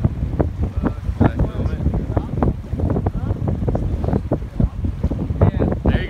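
Strong wind buffeting the microphone: a loud, constant, gusting rumble.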